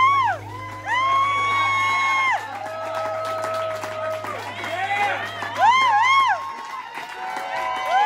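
Audience members whooping and cheering with long rising-and-falling 'woo' calls as a live band's song ends. The band's final low note rings under them and dies away about six and a half seconds in.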